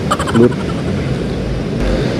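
A motor scooter running at low speed as it pulls over to the curb and stops, with steady road noise from traffic passing close by. A low rumble builds near the end.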